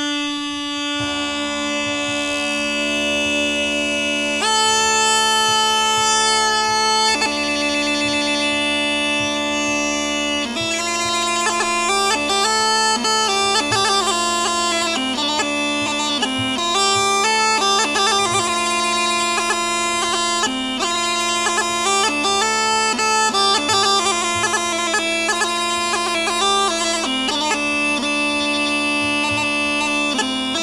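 Rhodope kaba gaida, the deep-voiced Bulgarian goatskin bagpipe, playing solo over its steady drone. It starts with long held notes, then about ten seconds in moves into a quicker, ornamented melody.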